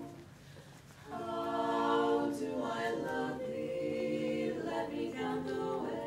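Female a cappella quartet singing in close harmony; after a pause of about a second, the voices come back in together on sustained chords that move through several notes.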